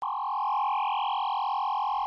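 A steady synthesized electronic tone, like a dial tone, held at an even level. It is a sound effect for an animated slide transition.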